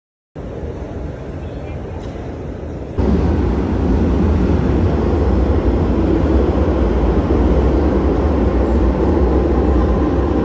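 Steady running noise inside a train carriage. About three seconds in, a cut brings a louder, steady low rumble of a metro train moving along an underground platform.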